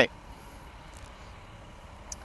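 Quiet outdoor background: a faint, steady low rumble with a faint tick about a second in.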